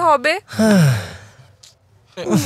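A man's voice finishing a few words, then a long, audible sigh that falls steadily in pitch over about a second.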